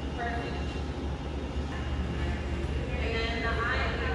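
Roller coaster station ambience: a steady low machinery hum with people's voices in the background.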